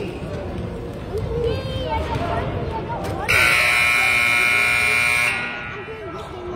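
Gym scoreboard buzzer sounding one steady blast of about two seconds, starting about three seconds in, the usual signal that a timeout is over. Background voices chatter before and after it.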